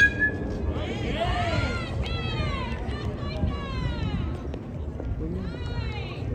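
Several voices of players and spectators calling and shouting over one another at a youth baseball game, with a sharp crack and a brief ring right at the start.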